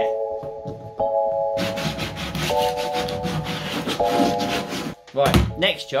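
Jigsaw with a fine-tooth metal blade cutting a round hole in the top of a plastic water tank: a rapid rasping starts about one and a half seconds in and stops at about five seconds. Background music with held chords plays throughout.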